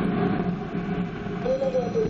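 Ariane 5's Vulcain 2 main engine running on the pad just after ignition: a steady rushing noise, before the solid boosters light. A voice is heard briefly near the end.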